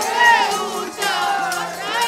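Congregation singing a Gurbani shabad kirtan together, many voices in unison, over harmonium and tabla.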